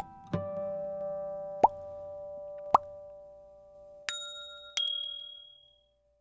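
Animated outro sound effects: a short plucked-note jingle with two quick popping blips, then two bright high dings that ring out and fade away.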